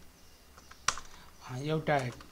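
Computer keyboard being typed on: a few faint key taps, then one sharp keystroke click about a second in.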